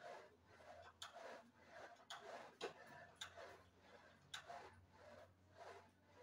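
Near silence broken by faint, sharp clicks, about one a second and not quite evenly spaced.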